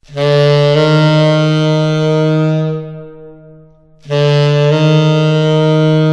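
Tenor saxophone playing a half-step approach twice: a short tongued E slurred up to a held F, the target note not tongued again. The second phrase starts about four seconds in.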